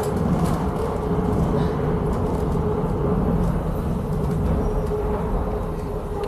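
Underground train of the Nuremberg U3 line running between stations, heard from inside the car: a steady low rumble with a faint, even whine.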